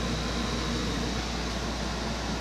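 Air conditioner running: a steady hum and rushing noise, with a faint high whine held throughout.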